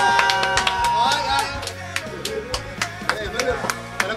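A few voices singing a held note that trails off about a second and a half in, followed by scattered, irregular hand claps and short bits of voice.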